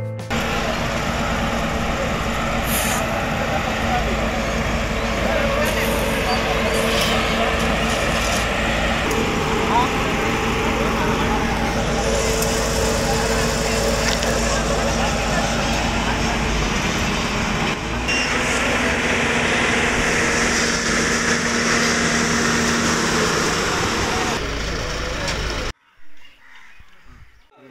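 Diesel engine of an Apollo asphalt paver running steadily, a continuous mechanical hum with a deep rumble, with people talking indistinctly over it.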